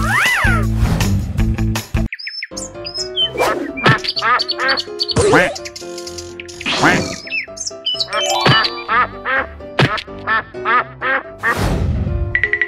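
Cartoon duck quacking over and over in quick succession, over light background music. A falling whistle-like tone sounds at the start and a swish near the end.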